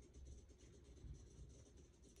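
Faint rustling of a stretchy flat cloth diaper as hands fold and smooth it against the floor.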